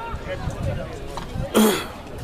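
Spectators chatting, with one loud, short cough close to the microphone about one and a half seconds in.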